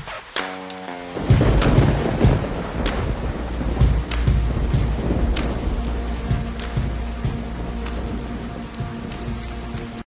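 A few last notes of a hip-hop beat, then about a second in a loud clap and rumble of thunder that gives way to heavy rain. The rain slowly fades, with a faint held tone underneath.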